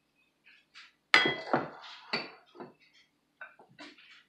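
Dishes clinking and knocking on a kitchen counter. A sharp, ringing clink comes about a second in, followed by several lighter knocks.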